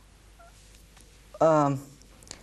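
A quiet pause with faint studio room tone, broken about one and a half seconds in by a man's single short voiced sound, a brief wordless utterance between phrases.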